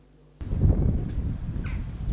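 Outdoor ambience that cuts in about half a second in, with wind rumbling on the microphone, and one short bird call near the end.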